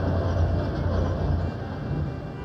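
Sound effect of a dredge's rotating cutter head digging into the bottom sediment: a low, steady mechanical rumble that eases slightly near the end.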